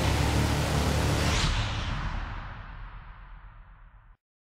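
Outro sound effect over the end logo: a loud, rushing noise-like swoosh that grows duller and fades away over the last two and a half seconds.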